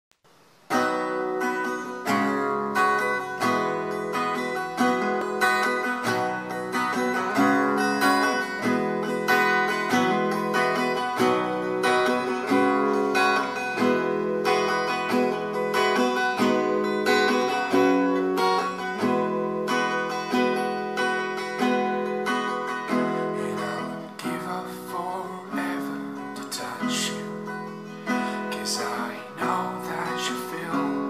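Acoustic guitar playing a steady picked chord pattern, starting about a second in.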